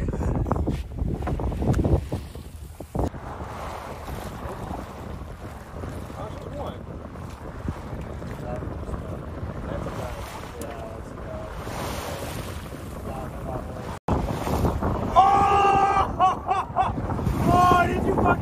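Wind buffeting the microphone over water washing past a small sailboat's hull, heaviest for the first two seconds and then a softer steady rush. After a sudden break near the end, loud pitched voices come in over it.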